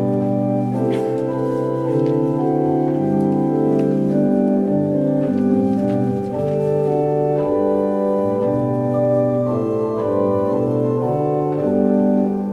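Pipe organ playing slow, sustained chords that change every second or so.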